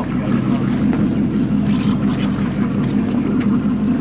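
Boat engine running steadily, a constant low hum, with the water and wind noise of the open lake around the hull.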